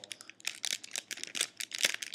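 Plastic wrapper of a protein bar crinkling as it is handled: a run of irregular sharp crackles, loudest near the end.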